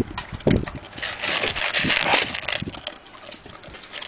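A dog eating dry kibble from a plastic bowl: crunching and chewing, with pellets clicking against the bowl, busiest in the first half and thinning toward the end.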